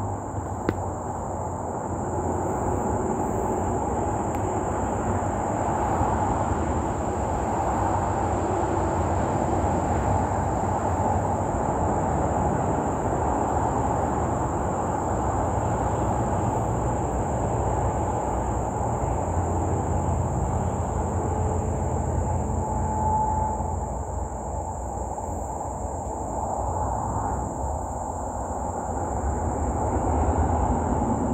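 A steady low rumbling noise, easing slightly about two-thirds of the way through and swelling again near the end, with a constant high-pitched drone of insects over it.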